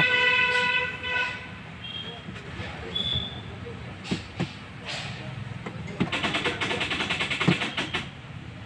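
Hyundai Xcent's starter clicking rapidly, about ten clicks a second for nearly two seconds near the end, with the engine not cranking. The battery is fully discharged, so too little voltage reaches the starter motor.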